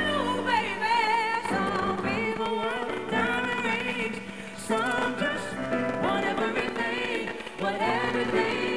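A female singer sings live in a wavering, ornamented gospel-soul style with vibrato, over piano accompaniment.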